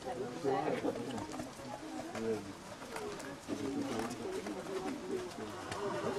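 Indistinct voices of people talking, none of it clear speech.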